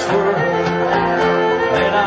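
Live Irish trad band playing an instrumental passage: fiddle and flute carrying the melody over a strummed acoustic guitar.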